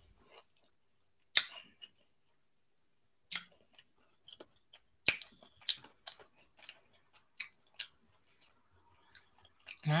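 A person chewing crunchy Goldfish cheddar crackers close to the microphone: a few separate crisp crunches early on, then more frequent ones, about two a second, in the second half.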